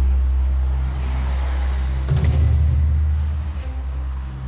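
Low, steady rumble of a truck engine running, growing a little louder and rougher about two seconds in.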